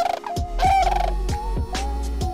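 Sandhill cranes calling: two short rattling bugle calls in the first second, over background music with a soft beat.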